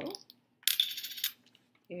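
A short scraping rustle of stiff paper, lasting about two-thirds of a second and starting about halfway in, as a paper chart is slid and lifted off a tabletop.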